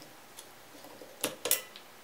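AA batteries being pulled out of the battery holder of a ThermoProbe TP7 C thermometer: a few light clicks, then two sharper clacks about a quarter second apart a little past the middle.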